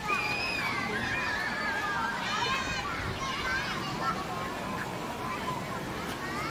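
Children's voices and other people chattering in the background, with high calls and shouts that rise and fall in pitch and no clear words.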